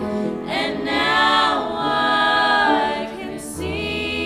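A small group of women singing a worship song together in harmony, with a short break between phrases near the end.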